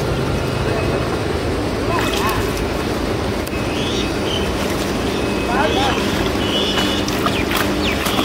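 Small engine-driven water pump running steadily with a constant hum, pumping water out of a puddle.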